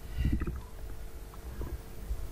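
Pause in speech filled with low rumble and a faint steady hum from the recording, with a brief faint murmur of voice near the start and a few soft clicks.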